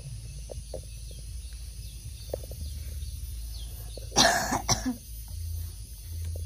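Two loud coughs close to the microphone about four seconds in, the second short after the first. Faint high chirps sound behind them earlier on.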